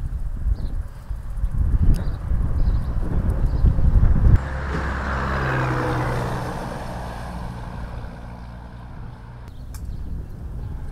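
Road vehicle noise: a heavy low rumble for about four seconds that stops suddenly. Then a vehicle passes on a road, its engine hum and tyre hiss swelling and fading away.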